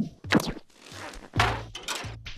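Stylised sound effects of a fast-cut film montage: a quick run of sharp hits and swishes, with a deeper, longer thud about one and a half seconds in.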